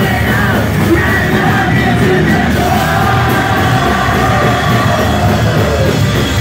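Live punk rock band playing loud, with yelled vocals over the band.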